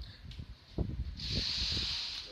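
A few dull handling knocks, then a steady hiss that starts a little past halfway and keeps going.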